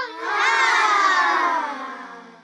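An electronic sound-effect sting for an outro animation: a dense cluster of tones sliding slowly downward in pitch, beginning to fade out near the end.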